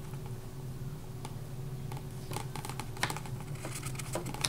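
Scattered light clicks and taps as a nail and fingers work at a plastic bottle cap glued onto a CD, a few of them close together about two to three seconds in, over a steady low hum.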